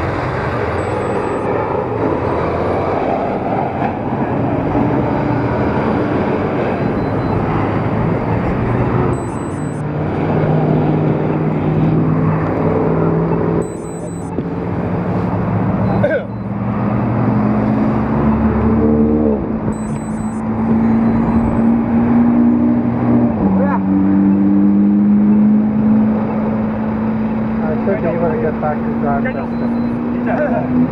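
Road traffic at an intersection: a steady noise of passing vehicles, then a motor vehicle's engine hum that climbs in pitch in steps, dips briefly and rises again, like a vehicle pulling away and accelerating through its gears.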